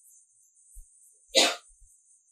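A single short, breathy burst from a person about a second and a half in, like a sneeze or a sharp exhaled laugh, otherwise near quiet apart from a faint steady hiss.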